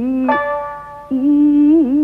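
Jiuta music: a sung voice holding long, wavering notes over plucked koto and shamisen. A plucked note rings out just after the start, and the held voice comes back in about a second in.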